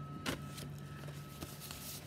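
Faint, steady drone of a lawn mower running in the distance, with a single sharp click about a quarter second in, from the stitched fabric being handled.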